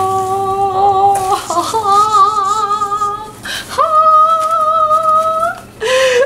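A woman singing a short wordless tune in three long held notes, each higher than the last, with a wavering vibrato; a brief gap comes before the last and highest note.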